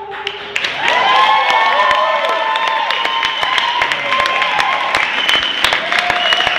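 Audience clapping and cheering, with high whoops over the applause. It breaks out just under a second in, as the singer's held final note dies away.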